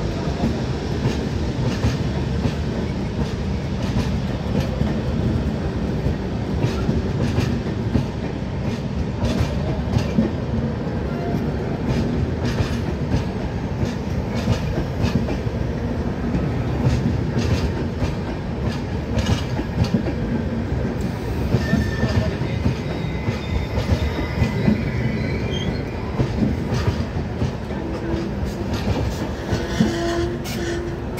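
Shatabdi Express passenger coaches rolling past at the platform, a steady rumble of wheels on rail with irregular clicks as the wheels run over rail joints.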